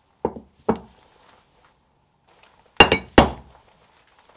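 Cut metal plates set down one on top of another on a workbench, clinking: two light clinks in the first second, then two louder ones close together near the end.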